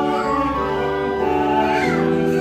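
Hymn singing with keyboard accompaniment: slow held chords that change step by step.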